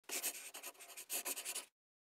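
Dry scratchy rustling in two quick runs of strokes, the second shorter, cutting off suddenly after about a second and a half.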